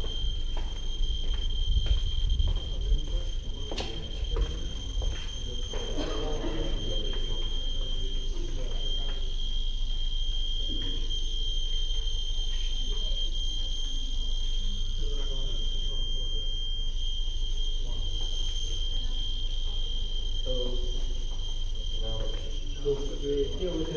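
Handheld Geiger counters clicking irregularly, most densely in the first few seconds, over a continuous high-pitched alarm tone from a radiation meter held against pipes and walls where radioactive dust has settled, with a low rumble underneath.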